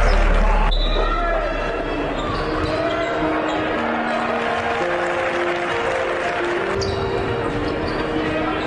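Basketball game sound in a gym: a ball bouncing on the hardwood court amid general court noise. It plays under soft background music of long held notes, while a heavier, bass-laden music track fades out in the first second.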